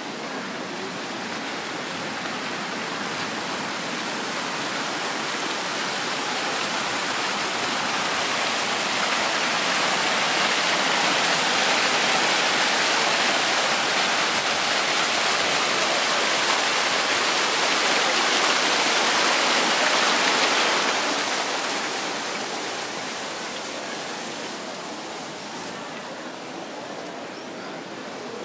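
Water from a plaza fountain's small jets splashing into its stone basin, a steady rushing splash. It grows louder over the first ten seconds, stays at its loudest for about ten more, then drops off and fades.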